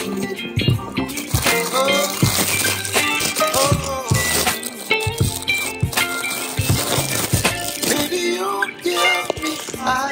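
Background music: a song with singing over a steady beat.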